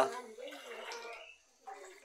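Faint sloshing of floodwater inside a flooded house, as someone moves through water standing on the floor.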